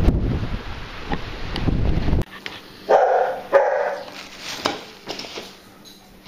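Wind buffeting the microphone cuts off abruptly about two seconds in. About a second later a dog barks twice, short and high-pitched, close together.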